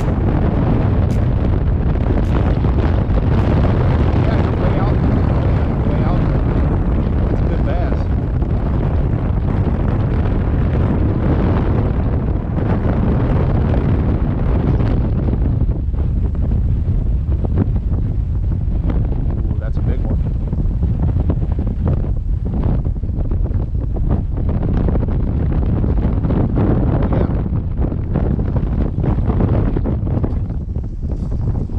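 Strong wind buffeting the camera microphone: a loud, steady rumble that rises and falls with the gusts, easing a little in the second half.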